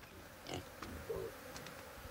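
Pigs grunting faintly, one short grunt about a second in, with a few light clicks.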